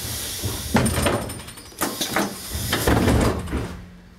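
Air-operated passenger doors of a Mercedes-Benz O 305 G articulated bus working: hissing air with a series of clunks and knocks as the door leaves move and lock, then quieter near the end.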